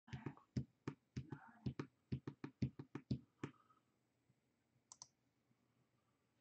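A quick run of sharp clicks and taps, about three or four a second, that stops about three and a half seconds in, followed by two fainter clicks about five seconds in.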